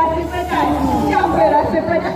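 Overlapping voices of a group of people talking and calling out at once.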